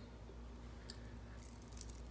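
Faint clicking of a gold Cuban link bracelet's metal links as it is handled and turned over: a light tick about a second in and a quick run of small clicks near the end, over a low steady hum.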